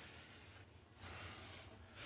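Faint rubbing of a paper towel wiping out the inside of a pot, a little louder in the second half.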